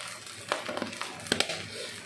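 A few light clicks and taps from kitchen handling around a wok of fried rice, the sharpest about a second and a half in, over a low steady hum.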